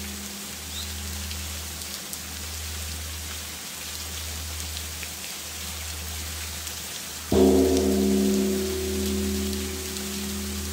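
Steady rain falling, with a low pulsing drone and a few held tones underneath. About seven seconds in, a struck, bell-like tone enters loudly and rings on.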